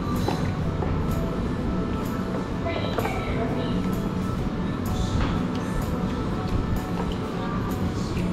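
Background music over a steady low hum of room noise, with a few light clinks of porcelain spoons against bowls, around three and five seconds in.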